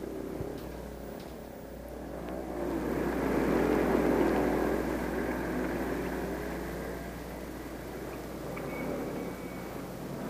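A motor vehicle's engine passing by, growing louder to a peak about four seconds in and then fading, over a steady low hum.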